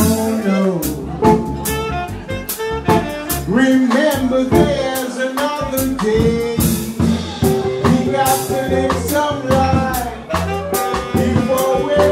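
Live jazz band playing: a drum kit with frequent cymbal and drum strokes, a walking low bass line, and a saxophone carrying the melody.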